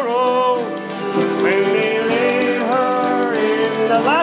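Live acoustic country-bluegrass jam: acoustic guitars strumming under a fiddle and a singing voice carrying a bending melody line.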